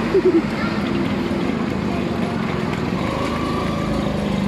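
Steady street traffic noise with a short bit of voice right at the start.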